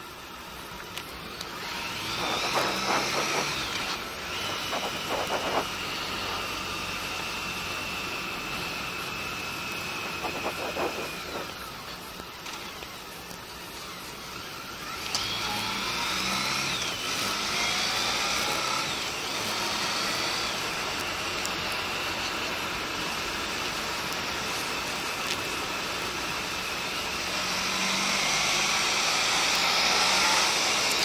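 Honda ST1300 Pan European's V4 engine and wind noise on a helmet camera. The bike slows through a bend, then the engine pulls up through the revs as it accelerates away, growing louder about halfway through and again near the end.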